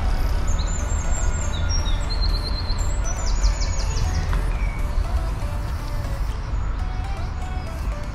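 Songbirds singing in woodland: a few short, high chirps and quick trills in the first half, over a steady low rumble.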